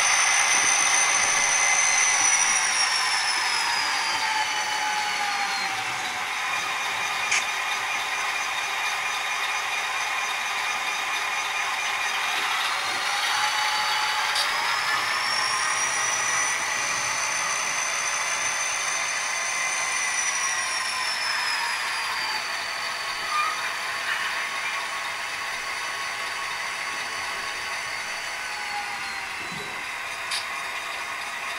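Sound decoders in HO-scale model diesel locomotives playing diesel engine sound, with a high whine that falls away, rises again about halfway and falls off once more as the throttle changes, over the running of the models' drives. A few light clicks.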